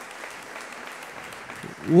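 Congregation applauding: steady clapping from many hands.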